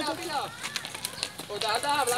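Several people's voices calling out over each other. There is a lull of about a second in the middle that holds a few light clicks.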